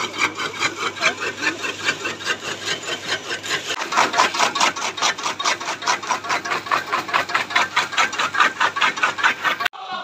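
Electric chaff cutter chopping dry maize stalks: a rapid, regular run of crunching cuts over the steady hum of its motor. It stops abruptly just before the end.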